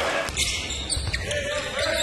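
Basketball game sounds in a gym: a ball bouncing on a hardwood court, a few short sharp knocks over the low rumble of the hall.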